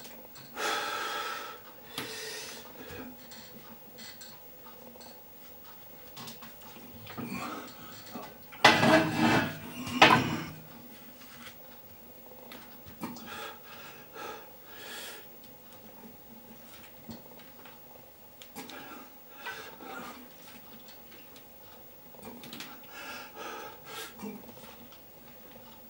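Back squat set with an 88 kg iron barbell: the cast-iron weight plates clink and rattle on the bar as it moves, over the lifter's heavy breathing. The loudest sounds come about nine and ten seconds in.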